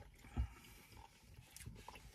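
Quiet eating sounds: a soft low thump about half a second in, then a few faint clicks of a fork against a foam takeout container.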